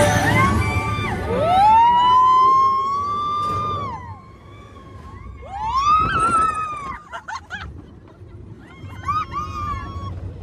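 Riders screaming on a fast open ride vehicle: long, held screams that rise and fall off. The first comes about a second in, another around six seconds and a third near the end, over rushing wind.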